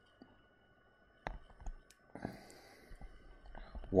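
Two short, sharp clicks a little over a second apart, followed by a soft breathy hiss, against near-quiet room tone.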